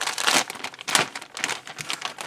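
A clear plastic bag crinkling as the bagged plastic model-kit sprue inside is handled, in irregular crackles.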